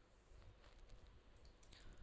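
Near silence: room tone with a few faint computer-mouse clicks.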